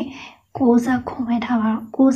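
Speech only: a woman's voice talking, breaking off briefly about half a second in before going on.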